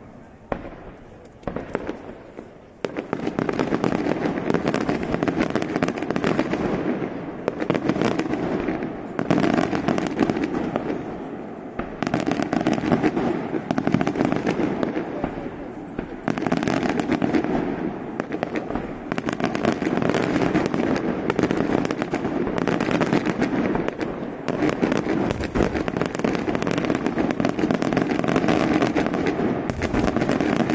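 Daytime fireworks: a few separate bangs, then from about three seconds in a dense, continuous barrage of rapid bangs and crackling that keeps going with only brief lulls.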